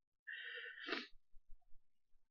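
A woman crying: one short, breathy sob of under a second, then near quiet with a few faint ticks.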